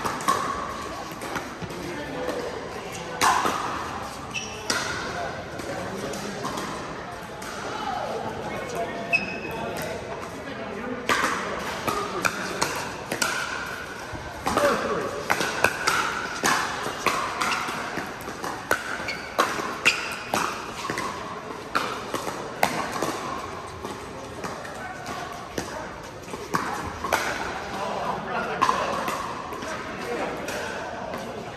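Pickleball paddles striking a hard plastic ball in a rally: sharp pocks at irregular intervals, with more hits from neighbouring courts, over the chatter of players.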